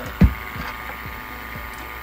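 A single dull thump about a quarter second in as the handheld gas detector is set down on the bench, over a steady hum.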